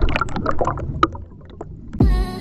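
Water splashing and slapping around a boat in irregular bursts over a low rumble, thinning out after about a second.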